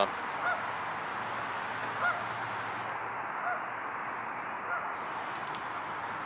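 Canada geese honking: four short calls spaced a second or so apart, over steady background noise.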